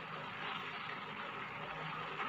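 Steady background noise of a low-fidelity recording: an even hiss with a faint low hum underneath and no words.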